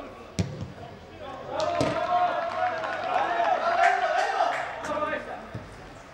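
A football struck hard with a sharp thud, then a second thud about a second and a half later, followed by several seconds of men shouting across the pitch.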